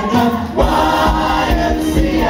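Show choir singing an upbeat number in many voices over music with a steady beat; a new sung phrase comes in about half a second in.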